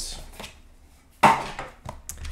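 A single sharp knock on the tabletop about a second in, with a smaller click shortly after, as trading card packs and blaster boxes are handled.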